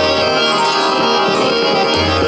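Harmonium playing a sustained melodic passage with tabla accompaniment in a Hindustani khyal in Raag Ahir Bhairav, while the vocalist pauses.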